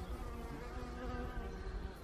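Flying insects buzzing: a steady wingbeat hum that wavers slightly in pitch, over a low rumble.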